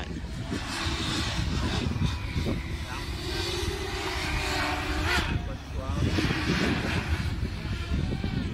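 Multirotor drone's propellers whirring in flight, a steady hum that wavers up and down in pitch.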